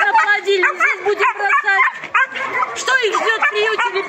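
Several puppies yipping and whining over one another, with a dense run of short, high, rising-and-falling calls and no break.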